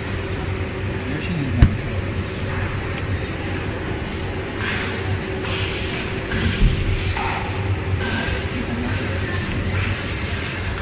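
Thin black plastic bag rustling as hands untie it and pull it down off a stack of plastic tubs, over a steady low hum. A sharp knock about one and a half seconds in and a duller one later, like the tubs being set against the table.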